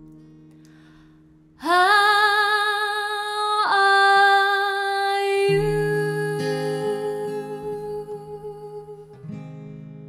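A female voice sings one long held note with vibrato over acoustic guitar, starting about a second and a half in. Then come a few strummed acoustic guitar chords, left to ring and fade.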